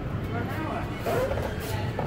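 Indistinct voices over a low, steady rumble of street traffic.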